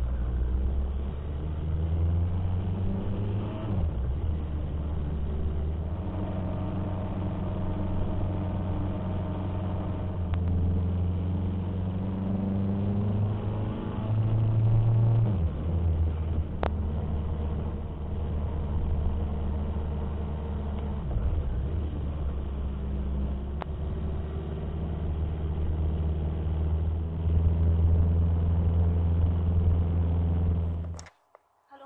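Motorcycle engine running under way, its low pitch rising and dropping several times with the throttle, over steady wind and road noise.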